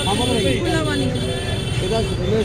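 Street voices talking over a steady low rumble of traffic, with a steady high-pitched whine running underneath.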